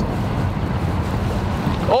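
Steady low rumble of wind and boat noise on an open fishing boat on choppy water.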